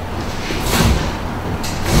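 Two brief scuffing rustles of a person moving, about a second apart, over a steady low room rumble.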